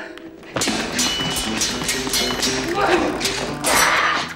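Spanish-flavoured orchestral film score that comes in loudly about half a second in and builds toward the end, with sharp repeated clicks of rapier blades clashing in a sword fight.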